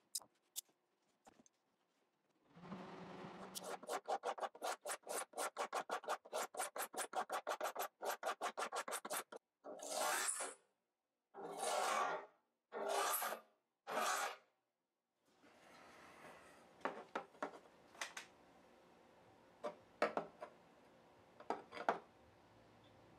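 Abrasive leveling block rubbed back and forth along the frets of a classical guitar, leveling the fret tops. It starts with a run of quick short strokes, about five a second, then four slower, longer strokes. Near the end come a few light clicks.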